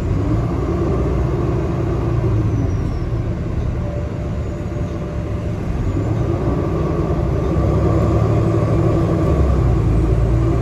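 Interior of a Nova Bus LFS city bus under way: a steady low rumble of engine and road noise with a faint hum, growing a little louder about three-quarters of the way through.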